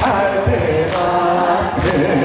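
Male trot singer singing live into a handheld microphone over a PA, holding long notes, with band accompaniment keeping a beat of roughly one stroke a second.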